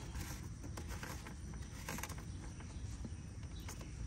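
A few faint, light clicks as the plastic cap is screwed back onto a car's coolant expansion tank, over a steady low outdoor background.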